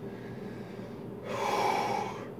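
A man's sharp breath in, about a second long, starting about a second in: a vaper pulling a lungful of vapor after a drag on an e-cigarette mod.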